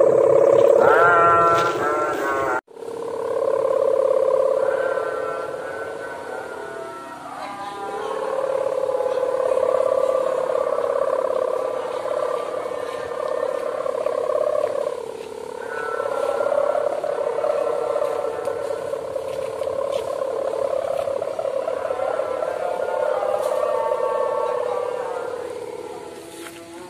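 The hummer (sendaren) on a 4-metre gapangan kite drones in the wind: a steady buzzing hum that wavers in pitch and sags lower twice. It breaks off sharply for an instant about three seconds in.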